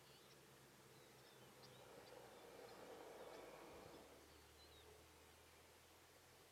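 Near silence: quiet open-air ambience with a few faint, high bird chirps and a soft swell of noise in the middle.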